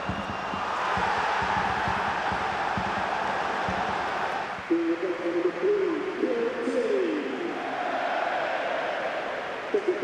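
Football stadium crowd noise that swells into cheering about a second in. From about halfway, loud voices call or chant over the crowd.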